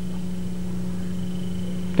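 Steady electrical hum with a faint high-pitched whine and a background of hiss, unchanging through a pause in speech.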